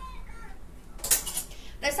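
A short clatter of small hard objects about a second in, with a faint high-pitched voice in the background before it; a woman's voice starts just before the end.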